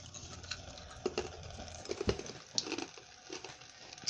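Thin stream of tap water trickling onto a block of ice over a stainless steel sink strainer, with faint irregular ticks and patters and a soft knock about halfway through.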